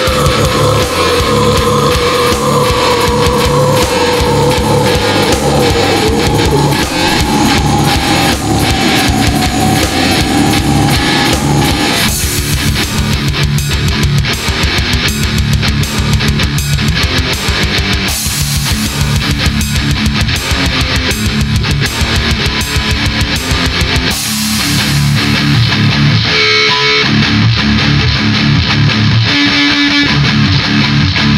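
Loud, vocal-free heavy metal passage with distorted guitars and drums. A sliding note falls in pitch over the first several seconds. Near the end the low end drops out for a moment before the full band comes back in.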